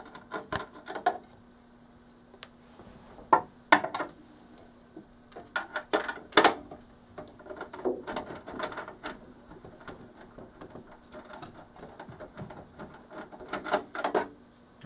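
Scattered metal clicks and knocks of hand work as the lower two 11/32-inch nuts are loosened and taken off the lock assembly inside a vending machine door, with a faint steady low hum under the first half.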